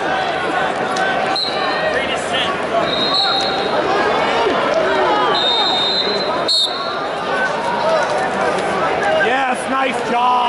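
Arena crowd: many voices shouting and talking at once, with a few short high-pitched whistle-like tones and a couple of sharp slaps.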